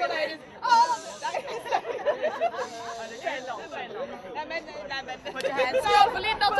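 Several women talking and exclaiming over one another in lively, overlapping chatter.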